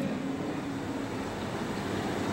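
Steady, even background noise, with no clear rhythm or tone, in a pause between a man's amplified sentences.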